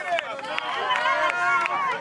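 Several people talking at once, with sharp hand claps scattered through.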